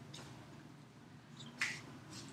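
Quiet room tone with a single short, sharp click about one and a half seconds in.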